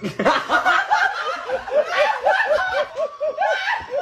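A person laughing hard in a long run of short, pitched pulses, about four a second.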